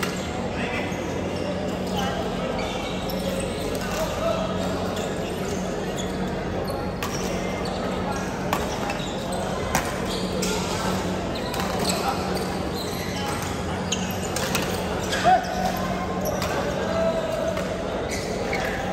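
Badminton rally in a large echoing hall: sharp racket strikes on the shuttlecock and short sneaker squeaks on the court floor, the loudest hit about fifteen seconds in, over indistinct chatter from other courts and a steady low hum.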